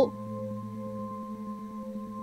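Binaural-beats backing track: several steady, held tones, a low hum with higher ringing tones above it, with a faint fast pulse running under them.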